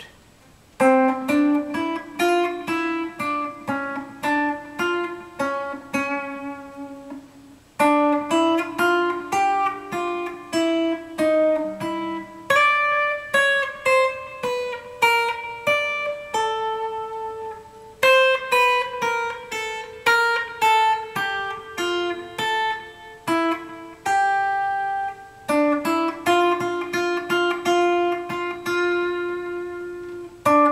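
Ibanez AG95 hollow-body electric guitar playing a slow single-note lead line, note by note, in phrases with short breaks about 7, 12, 18 and 25 seconds in.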